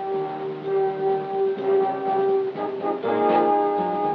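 Background film score music: one long held note for the first two and a half seconds or so, then a run of shorter changing notes.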